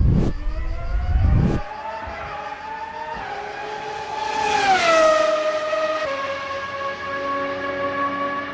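Racing car engine sound effect: two low rumbling whooshes at the start, then an engine note climbing slowly in pitch, dropping sharply about five seconds in and settling on a steady lower note.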